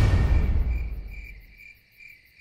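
The tail of the trailer's music fades out over the first second and a half, leaving crickets chirping steadily, with a pulse about twice a second.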